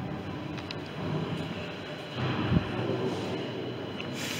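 Steady rumbling handling noise from a camera being carried along a walkway, with one low thump a little past halfway.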